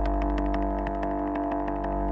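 Intro of a rock song played back from its lyric video: a sustained chord held steady over a deep bass drone.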